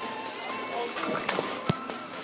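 Background music with voices in a busy restaurant, and a couple of sharp knocks in the second half.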